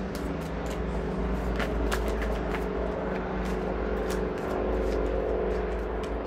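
Tarot cards being shuffled by hand, with scattered sharp clicks and slaps of the cards over a steady low rumbling hum.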